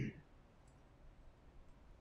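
Faint, sparse clicks of laptop keyboard keys as terminal output is scrolled, over quiet room tone, with a short murmur of a voice at the very start.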